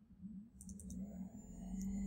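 A few faint computer mouse clicks, a cluster about half a second to a second in and one more near the end, over a low background hum.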